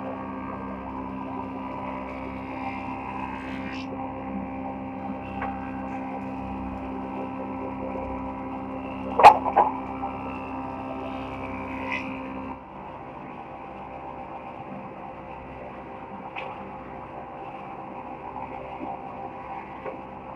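Wood planing machine running with a steady droning hum as boards feed through. A sharp double knock comes a little past nine seconds in. Past the middle, the lower tones of the hum drop out and the hum runs on slightly quieter.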